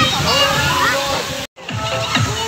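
Pool water sloshing with children's voices in a water park, then a sudden cut about one and a half seconds in to electronic background music with a steady beat.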